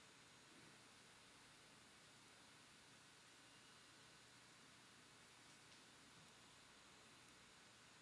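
A very high, steady electronic sine tone held without change over a soft hiss.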